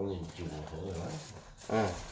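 A person's voice making drawn-out vocal sounds without clear words, ending in a louder call that falls in pitch near the end.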